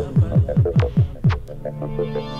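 Instrumental break in a song's backing track: a fast run of drum hits, each dropping in pitch, then a held chord from about one and a half seconds in.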